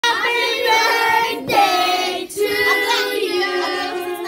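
Singing in long held notes, led by a child's voice, with a short break about halfway.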